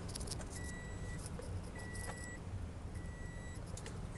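Toyota Fortuner's dashboard warning chime beeping steadily, about one high beep every second and a bit, each beep about half a second long, with a few light clicks of handling in the cabin.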